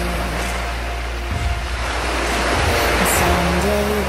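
Surf washing onto a shore, mixed with background music of held low bass and a few sustained melody notes. The rush of the waves swells up in the second half.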